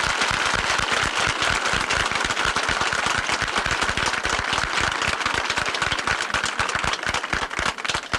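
Large crowd applauding: dense, sustained clapping.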